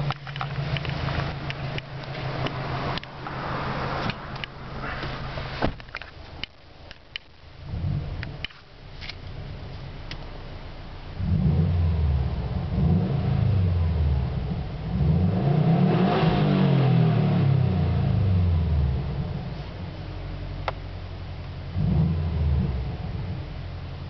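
2010 Subaru WRX's turbocharged flat-four boxer engine, heard from the driver's seat, idling and then revved several times in quick succession in the second half. Its exhaust is made louder by a washer spacer that opens a gap between the muffler and the pipe. Clicks and knocks of handling come in the first few seconds.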